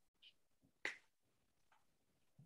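Near silence with a few faint clicks, one sharper click a little under a second in.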